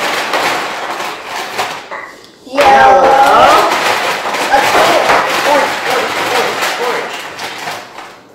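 Voices of a woman and children talking indistinctly over one another, with a brief lull about two seconds in.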